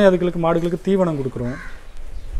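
A man talking, with a single crow caw in the background shortly after the middle, as his words pause.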